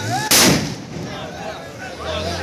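A firecracker exploding on the ground with one loud bang about a third of a second in.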